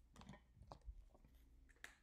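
Near silence: room tone with a few faint, short clicks and rustles from someone moving at a chart, the clearest just before the end.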